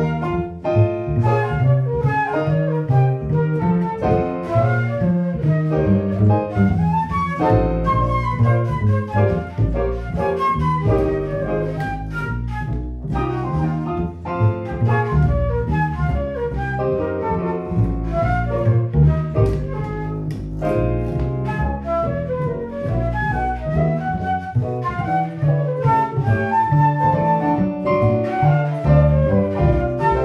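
Live jazz trio: a concert flute plays a quick melody line over digital piano and upright double bass.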